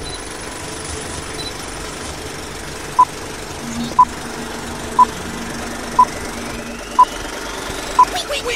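Film countdown leader sound effect: a steady film-projector rattle and hiss with a low hum, and a short high beep once a second, six beeps starting about three seconds in.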